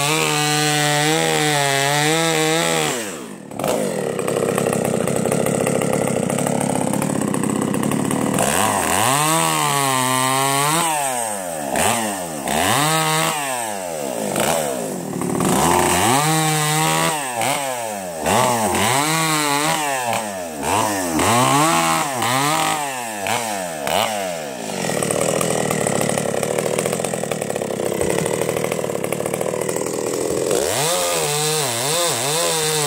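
Husqvarna two-stroke chainsaw cutting through logs. It runs at high revs, drops off sharply about three seconds in, then rises and falls in pitch again and again as it comes in and out of the wood, and settles into a steady cut near the end.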